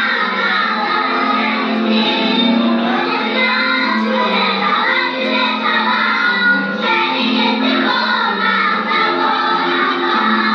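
A group of young children singing a song together as a choir, continuously.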